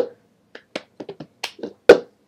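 Cup-song rhythm played on a plastic cup: hand claps and the cup tapped and slapped on a hard floor in a quick run of sharp hits. The loudest come at the start, about halfway through and near the end, with softer taps between.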